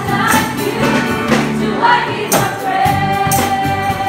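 Live gospel worship song sung by a group of women with instrumental backing, with tambourine jingles. The voices hold one long note through the second half.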